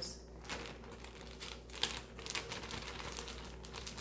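Plastic zipper storage bag crinkling as it is pulled open and handled, a steady run of small crackles.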